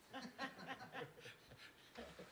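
Faint laughter in short, repeated chuckles, a few a second.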